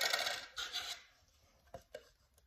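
Red plastic party cups clattering for about a second as a card is knocked out from between the stacked cups, followed by two light clicks near the end.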